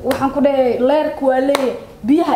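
A woman talking animatedly, with one sharp click about one and a half seconds in.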